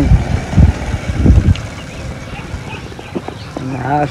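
Low, irregular rumbling bursts on the phone's microphone through the first second and a half, then faint outdoor background, with a man's voice starting near the end.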